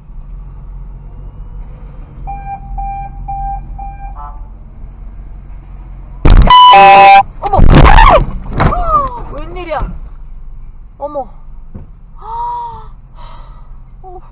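Car idling, with a run of short beeps about two seconds in, then a very loud car horn blast held for about a second just past the middle, followed by shouting.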